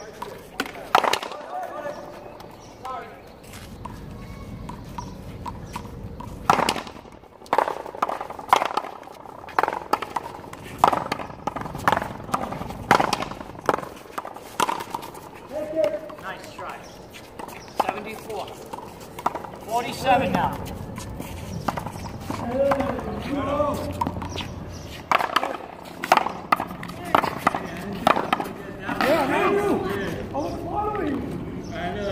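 Paddles hitting a rubber ball back and forth against a concrete wall in a long rally, sharp single hits every second or two, with voices in the background.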